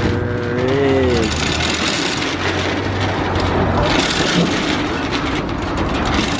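Steel roll-up security shutter being raised over a storefront: continuous noise with a low hum through the first few seconds.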